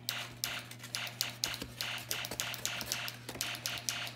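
A fast, irregular run of sharp clicks and taps, several a second, like typing, over a steady low hum.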